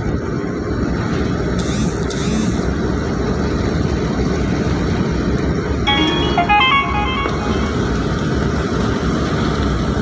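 Steady low rumble of a vehicle's engine and tyres on the road, heard from inside the cabin. About six seconds in, a short tune of quick electronic-sounding notes plays for just over a second.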